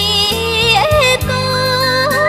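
Cambodian pop song: a woman sings long held notes that slide down about a second in, over a backing band with a steady bass line.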